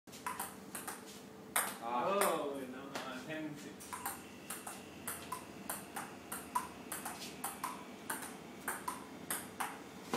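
Table tennis rally: the ball clicks sharply off the paddles and table about three times a second, each hit with a short ping.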